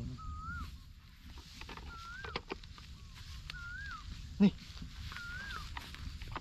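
A bird calling over and over, one clear whistled note that rises and then falls, repeated about every second and a half to two seconds. A few light clicks come a little after two seconds in, and a single short spoken word comes near the end.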